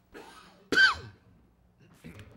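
A person coughs once, hard and sudden, about three quarters of a second in, after a short intake of breath. The cough ends in a brief voiced tail that falls in pitch.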